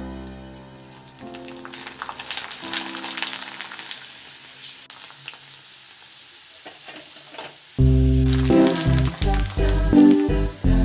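Dried papads deep-frying in hot oil in a steel kadai: a steady crackling sizzle with many small pops as they puff up. Background music fades out in the first second and comes back loudly about eight seconds in.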